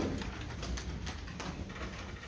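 Quiet lull with no music playing: the low steady hum of a school hall, faint rustling and a few light clicks.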